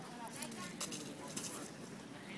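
Faint background voices of people talking at a distance, with a few short scuffs or clicks in the first second and a half.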